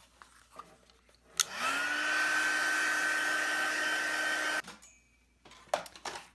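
Handheld electric dryer switched on with a click, its fan spinning up with a rising whine, blowing steadily for about three seconds, then switched off, to dry wet watercolour paper.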